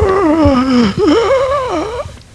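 A man crying out in pain in two long, wavering cries, the first falling in pitch, with a short break about a second in: the reaction to being struck by a pain ray.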